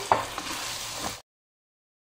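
Diced vegetables sizzling in oil in a nonstick pan while a wooden spoon stirs them, with a sharp knock of the spoon against the pan just after the start and a few lighter clicks. The sound cuts off abruptly a little past a second in.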